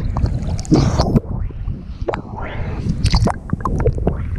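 Choppy water sloshing and splashing around a camera held at the water surface, close on the microphone, with irregular wet slaps and drips.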